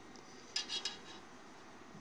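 Metal spoon clinking faintly against the side of a pot of cheese curd and whey: a few short light clinks just over half a second in, over low room noise.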